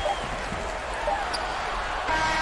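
Simulated basketball arena sound from a video game: a steady crowd noise with a ball dribbling and a few short sneaker squeaks on the court.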